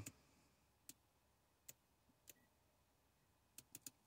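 Near silence broken by a few faint, sharp clicks, with a quick run of three near the end: the Audi MMI rotary control knob being turned through the drive select menu.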